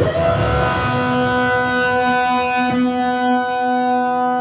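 Live-looped electric guitar tuned to A=444 Hz: a chord struck at the start rings on into steady held notes, with a low sustained note joining about a second in.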